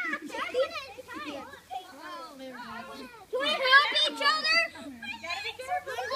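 Several young children talking and shouting over one another as they play, with a louder burst of high-pitched shouting about three and a half seconds in.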